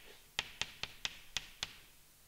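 Chalk on a chalkboard while writing: about six sharp taps over a second and a half, with faint scraping between them, stopping shortly before the end.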